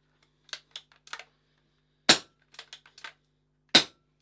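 BSA R10 sub-12 ft-lb PCP air rifle firing two shots about a second and a half apart, moderated by its carbon fibre shroud with a silencer fitted on the end. A few light clicks come before each shot.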